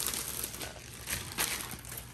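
Thin plastic sleeve crinkling in several short rustles as it is slid off a rolled diamond painting canvas.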